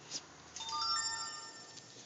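A short chime of several clear, bell-like tones at different pitches, coming in one after another about half a second in, ringing together and fading away near the end.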